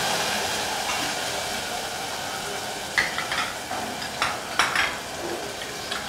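Hot oil with spices sizzling in a steel pot, the hiss slowly fading, with a few sharp clinks of kitchenware from about three seconds in.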